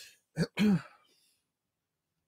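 A man clearing his throat: a short catch followed at once by a brief voiced rasp.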